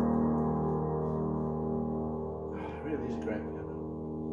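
Final chord of a Yamaha B1 upright acoustic piano ringing on and slowly dying away, held by the sustain pedal with the hands already off the keys. A man's voice sounds briefly, about two and a half to three seconds in.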